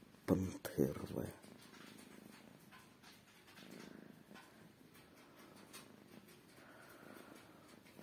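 Domestic cat purring close to the microphone, faint and steady after a few spoken words at the start.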